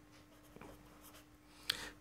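Marker pen writing on a paper chart: faint scratches of the strokes, with a short, sharper stroke near the end.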